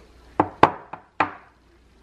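Empty glass spice jars set down on a kitchen countertop: four sharp knocks in a little over a second.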